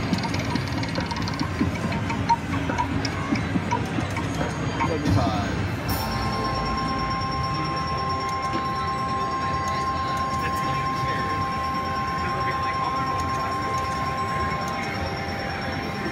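777 Wheel Hot video slot machine sounds: jingling game sounds while the bonus wheel spins, then from about six seconds in a steady electronic tone held for roughly nine seconds while the win meter counts up the credits won, stopping shortly before the end.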